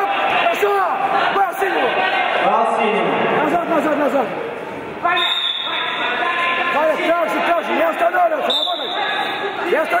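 Several men's voices shouting over one another, fight-side instructions from coaches. A short high steady tone sounds twice, about five seconds in and again near the end.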